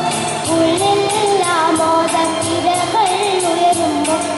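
A children's choir singing a melody together, with accompaniment that keeps a steady beat.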